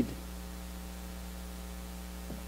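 Steady electrical mains hum with a faint hiss, a low buzz of several even pitches that does not change.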